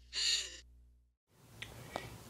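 A single short, harsh noise burst lasting about half a second, part of the intro's sound design, followed by silence; faint room hiss with a small click comes in near the end.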